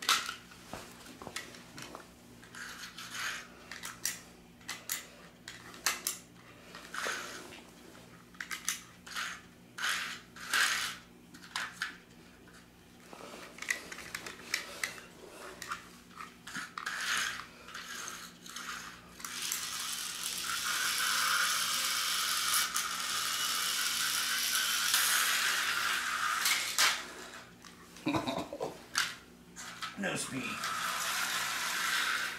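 Clicks and knocks of plastic slot cars and the hand controller being handled on the track. About twenty seconds in, an HO-scale slot car's small electric motor runs with a steady high whir for about seven seconds, then stops, and more clicks follow. A faint steady low hum runs underneath throughout.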